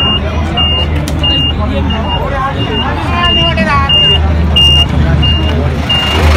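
A vehicle's reversing alarm beeping at an even, steady pace, about three short high beeps every two seconds, over the low hum of a running engine.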